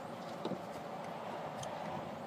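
A screwdriver loosening a hose clamp on a hose line, giving a couple of faint ticks over a steady low hiss.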